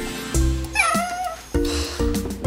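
A short cartoonish cat meow sound effect, one call rising then falling, about a second in, over light background music.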